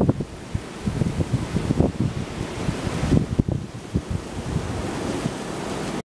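Wind buffeting the microphone in uneven gusts, a low noise that swells and drops.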